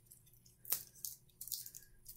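Faint crinkles and ticks of aluminium foil and tape as a piece of tape is pressed around the hip joint of a twisted tin-foil armature, with one sharper tick a little under a second in and a few small ones later.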